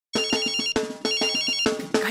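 Telephone ringtone trilling twice, each ring about half a second long with a short gap between, over a steady lower tone at the start of a norteño song.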